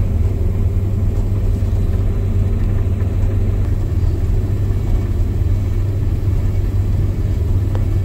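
Combine harvester running, heard inside its cab: a steady low drone with a deep hum that does not change.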